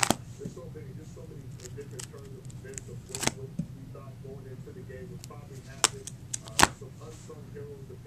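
Plastic sleeve pages of a trading-card binder being turned, giving four sharp plastic snaps over a steady low hum.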